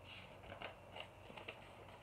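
Faint rustling and a few soft clicks of a picture book's paper page being turned.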